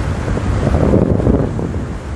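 Wind buffeting the microphone of a fast-moving motorboat, over the rush of the boat through the water, swelling louder about a second in.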